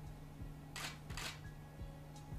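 Two camera shutter releases about half a second apart, over faint background music with a low beat.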